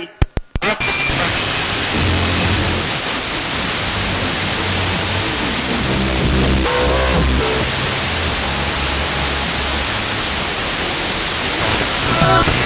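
Blaupunkt car radio's FM tuner cutting out briefly with a few clicks as it steps frequency, then a steady hiss of static with a weak, distant station's music faintly underneath, fading in and out through the noise.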